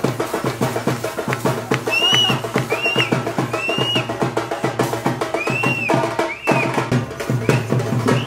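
Karnataka folk drum ensemble playing the accompaniment for a Nandi Kolu Kunitha pole dance in a fast, even beat. From about two seconds in until near the end, short high piping notes that rise and fall sound over the drums, about one a second.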